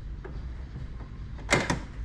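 A short clatter of two quick knocks, close together about one and a half seconds in, over a low steady hum.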